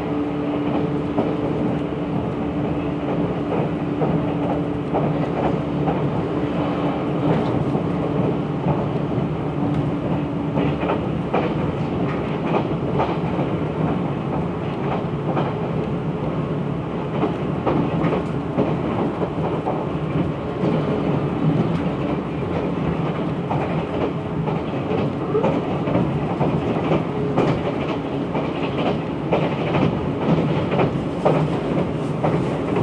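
Inside a 485-series electric train car running at speed: a steady rumble of wheels on rail, with repeated clicks and clacks from the rail joints. A steady hum runs through about the first ten seconds and then fades out.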